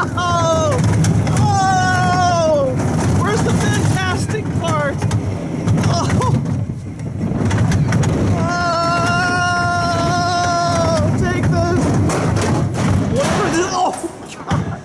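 Small steel roller coaster train running rough on its track: a steady low rumble and rattle, with high squealing tones over it, one falling in pitch about two seconds in and a long steady one from about nine to eleven seconds. The squeals and rattling are the ride's own unusual noises.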